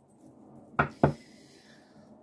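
Two sharp taps about a quarter of a second apart: a deck of tarot cards knocked against a tabletop.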